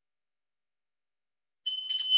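Near silence, then about one and a half seconds in an altar bell starts ringing, a high, clear ring with a short jingle, marking the consecration of the chalice.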